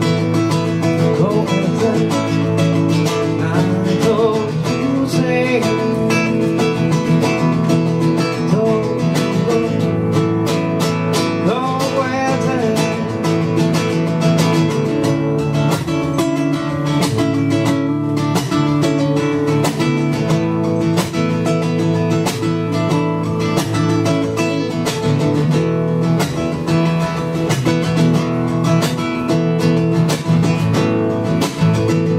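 Solo acoustic guitar played live, strummed and picked in a steady, driving rhythm.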